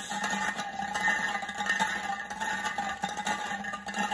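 Small numbered balls rolling and clicking against the inside of a glass jar as it is swirled: a continuous rattle with many small clicks.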